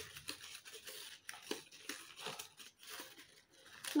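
Scissors snipping through the pleated tissue-paper fan of a paper cockade, a run of irregular crisp cuts with paper crinkling as it is handled.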